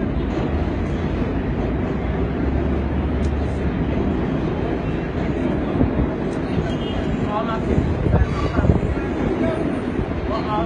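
Steady low rumble of city street traffic, with people's voices talking in the background from about seven to nine seconds in.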